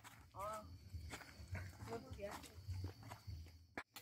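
Faint, distant voices of people talking outdoors, with scattered small crackles and clicks and a low hum; the sound cuts out briefly near the end.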